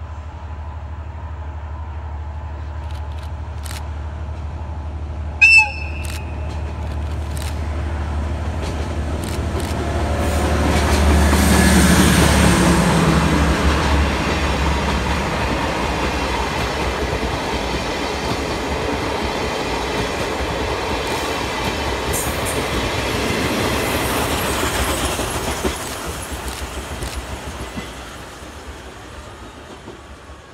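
A JR DE10 diesel-hydraulic locomotive approaching and passing with a train of old-style passenger coaches: its low engine drone builds, a short horn blast sounds about five seconds in, and the engine is loudest near the middle. The coaches' wheels then clatter over the rail joints as they roll by, fading toward the end.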